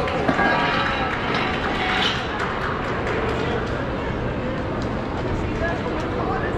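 Indistinct voices and background chatter of a mall food court, with one sharp knock just after the start as an orange metal chair is gripped and moved.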